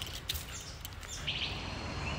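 Outdoor garden ambience: faint bird chirps over a low, steady rumble.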